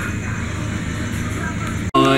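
Steady background rumble and hiss with a low hum, holding an even level throughout, then cutting off abruptly just before the end.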